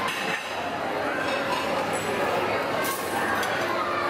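Crowded restaurant dining room: many overlapping voices chattering, with dishes and cutlery clinking now and then.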